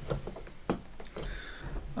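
A few light clicks and taps as the nested stainless-steel camping pot and its rubber trivet are handled, the clearest one a little under a second in.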